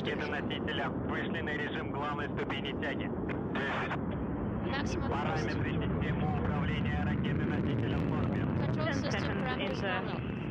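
Steady noise of the Soyuz rocket's engines during liftoff and climb, heard through the launch broadcast feed, with radio voice callouts over it.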